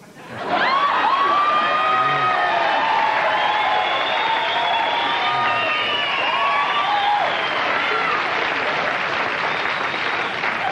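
Studio audience laughing, applauding and cheering. The reaction swells up about half a second in and holds for nearly ten seconds, fading slightly near the end.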